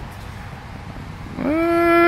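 Low background noise, then about one and a half seconds in a person's voice holds one long, drawn-out note.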